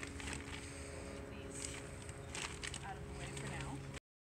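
Rustling and soft knocks of bedding and a plastic bag being lifted out of a van, over a steady low hum.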